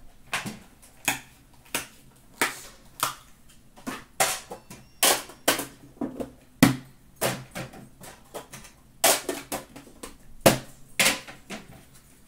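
Metal card tins being handled, opened and set down: a run of irregular sharp knocks and clicks, about two a second, a few louder clanks with a short ring.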